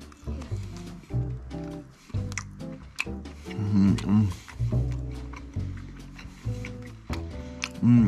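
Background music with held low notes changing in steps, over the soft, squishy bite into an uncooked potato-and-spinach-filled poultry sausage and the chewing that follows, with a few sharp mouth clicks.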